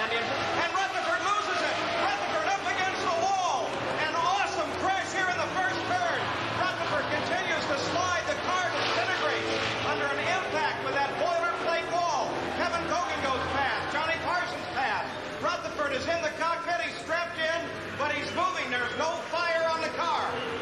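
Indistinct talking: voices run through without a break, but no words can be made out.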